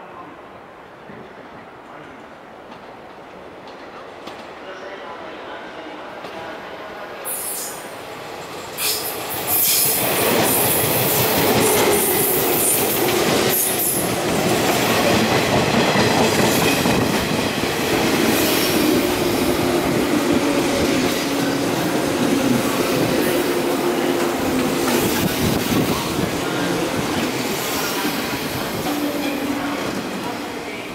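A 581/583-series sleeper electric train pulling slowly into a station platform. It grows steadily louder, with high wheel squeals on the track about a quarter of the way in, then loud rumbling and clacking of the cars with steady humming tones as it runs alongside the platform.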